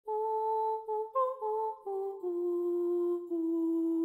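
A single voice humming a short wordless intro tune of about seven held notes that step mostly downward in pitch, the last two notes the longest and lowest.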